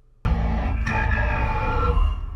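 Movie soundtrack over a cinema's speakers, heard in the auditorium: a loud deep rumble starts suddenly about a quarter second in, with sustained high tones held over it.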